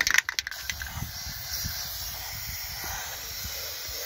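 Aerosol can of Fluid Film rust-prevention undercoating spraying with a steady hiss, after a few sharp clicks in the first half second.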